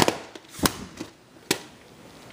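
Plastic VHS cassettes and cases clacking as they are handled: three sharp clicks, at the start, about half a second in and about a second and a half in.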